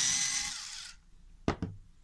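Ryobi cordless screwdriver's motor whining for about a second as it backs a screw out of a copier fuser unit's frame, fading as it stops, then a single sharp click about a second and a half in.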